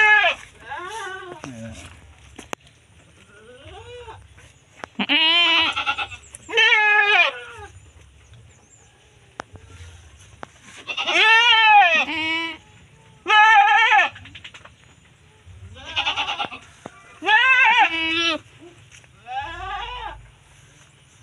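Goats bleating repeatedly: about ten loud, quavering calls of half a second to a second each, some coming in quick pairs.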